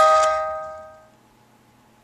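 Wind-up music box in a tin musical kaleidoscope: a last plucked note at the start rings out and fades away within about a second, leaving only faint hiss.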